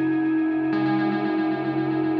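Playback of an electronic music track from Ableton Live: sustained synthesized tones, with a brighter layer coming in under a second in.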